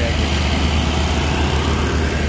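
Large coach bus diesel engine running close by, a steady loud low drone with a noisy rumble on top.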